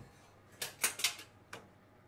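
A few sharp clicks and knocks as a kitchen oven door is opened, four of them over about a second.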